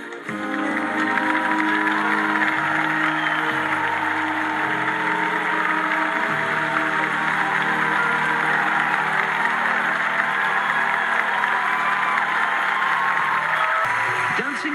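Waltz music in slow, held chords with a studio audience applauding over it; the applause comes in suddenly just after the start.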